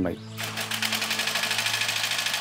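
Small engine of a long-shaft propeller boat running at idle, a fast, even mechanical clatter over a low steady hum.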